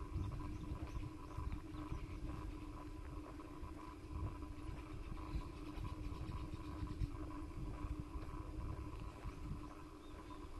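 Wind rumbling unevenly on the microphone while moving outdoors, with a faint steady hum underneath.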